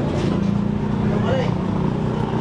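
A small engine running steadily at idle, a constant low hum, with a voice speaking briefly in the background.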